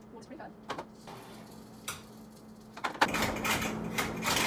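A metal baking sheet and oven being handled: a few light knocks, then from about three seconds in a louder clatter with several sharp clicks.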